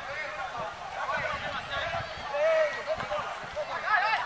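Spectators' voices talking and calling out beside a football pitch, one voice loudest a little past halfway.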